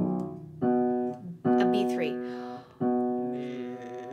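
Upright piano notes played one at a time, three strikes each ringing and fading, to find the pitch of a low sung note.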